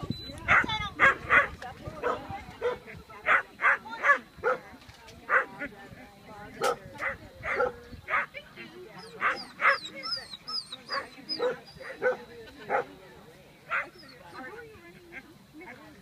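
A dog barking over and over in short barks, one to three a second, with a few faint high chirps about ten seconds in.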